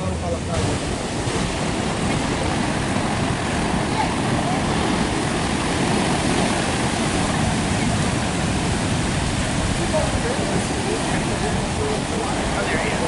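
Ocean surf breaking on a sandy beach, a steady rushing noise with wind on the microphone.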